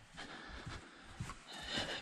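Faint footsteps and rustling on a straw-covered barn floor, with a few soft ticks.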